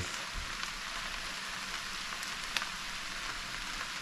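Okra and salt fish frying in a pan, a steady sizzle, with a couple of faint clicks near the middle.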